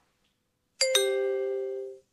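Two-note chime, a higher note then a lower one a fraction of a second later, ringing out and fading over about a second. It is the ding-dong signal that opens the next question of a recorded listening test.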